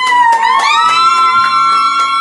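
Hip-hop background music: one long held high note over a steady beat.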